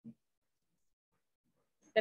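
Near silence on a video-call line, with one short low sound just after the start; a woman starts speaking right at the end.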